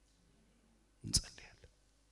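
A pause in a man's sermon: quiet at first, then about halfway through a sharp mouth click or intake of breath, followed by a short, faint whispered sound.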